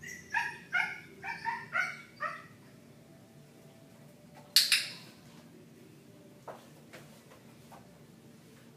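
A dog giving about six quick, high-pitched yips or whines in a row over the first two seconds. About four and a half seconds in comes a single loud, harsh, hissy burst, followed by a few faint clicks.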